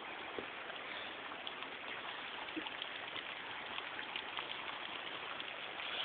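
Water falling off a mossy cliff face in many drops and thin streams, a steady, even splashing like rain, with a few single drops standing out now and then.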